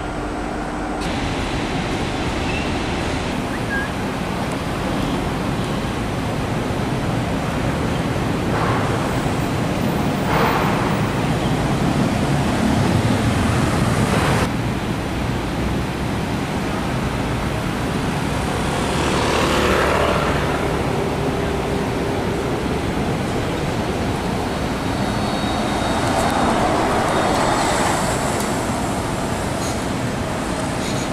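Running noise inside a metro train carriage, swelling to a peak and then cutting off. Then a single-deck city bus moves off, its engine noise rising and falling twice among road traffic.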